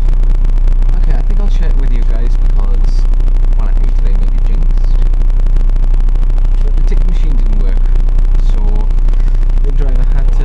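Loud, steady low rumble inside a moving bus, the engine and road vibration carried through the cabin, with faint voices of other passengers talking over it.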